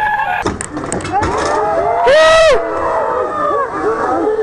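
A group of people in a lake shouting and laughing, with a few sharp knocks and splashes in the first second. About two seconds in, a woman lets out a loud, high scream that falls away at the end.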